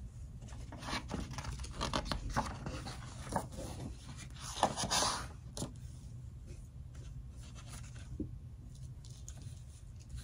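A paper page of a hardback picture book being turned, a soft swish about five seconds in, amid light rustling and scraping as the book and a fabric hand puppet are handled.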